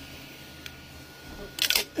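A freshly 3D-printed plastic ocarina being pulled off the Creality Ender 3's print bed: two short, loud scraping cracks close together near the end, after a faint click.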